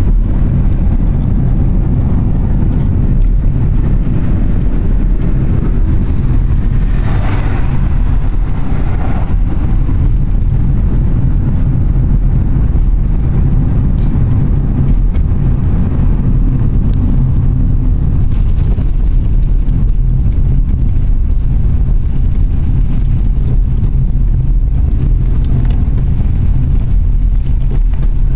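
Steady low rumble of a car driving, road and engine noise heard inside the cabin.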